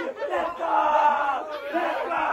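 A group of young men yelling and cheering together in excitement, with one long held shout in the middle, celebrating a goal.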